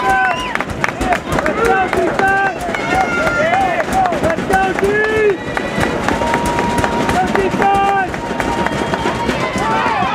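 Many voices of spectators and players shouting and calling over one another, short overlapping cries one after another, during a youth American football play.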